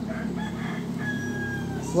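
A rooster crowing faintly, its call ending in one long, slightly falling held note.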